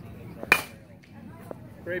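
A baseball popping into a catcher's leather mitt once, a sharp crack about half a second in, with the batter taking the pitch.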